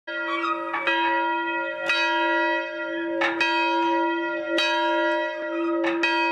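A single church bell swinging on its rope-pulled yoke in an open frame tower, its clapper striking about five times, roughly once every second and a quarter. Each strike rings on under the next, so the bell's deep hum never dies away.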